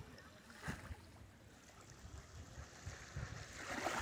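Faint wash of small sea waves lapping at a rocky shoreline, swelling near the end.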